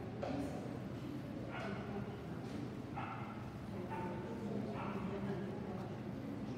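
A dog barking about five times, roughly one bark a second, over a steady low hum and background voices.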